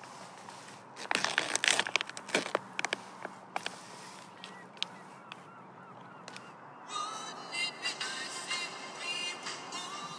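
Foil-lined food pouch crinkling and tearing open in hand, loudest for the first few seconds. From about seven seconds in, geese honking repeatedly.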